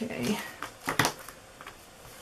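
A brief murmured voice, then two sharp clicks close together about a second in: scissors snipping ribbon.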